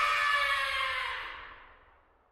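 An edited-in dramatic sound effect: a ringing tone that falls slightly in pitch and fades out to silence near the end.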